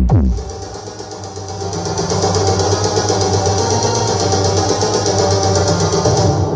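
Electronic dance remix played loud through a towering stack of PA speakers. It opens with a steeply falling bass sweep that drops to a deep boom, then runs on as a steady beat with a heavy bass line and fast high ticking.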